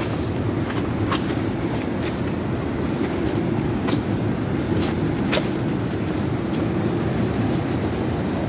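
Steady low rumble of ocean surf breaking on a rocky shore, with a few brief clicks scattered through it.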